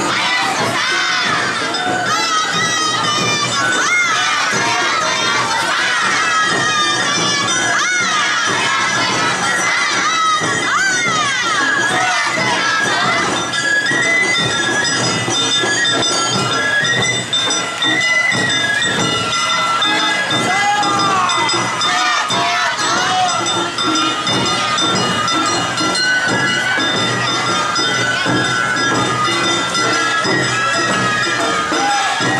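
Many high-pitched voices of Awa Odori dancers calling out together over a crowd, with the festival band's music running under them and steady held notes coming through from about the middle on.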